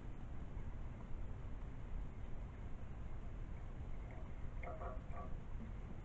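Liquid acid poured from a plastic bottle into a small glass bottle, faint against a steady low background rumble. A brief spoken word comes near the end.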